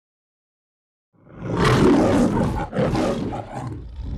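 The MGM logo's lion roar: a recorded lion roaring, beginning about a second in after silence. It comes in two long roars with a brief break between them, and is quieter near the end.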